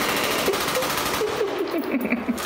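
A fast, even rattle of many clicks, like a clattering sound effect. A faint wavering, voice-like sound runs under it and becomes clearer near the end.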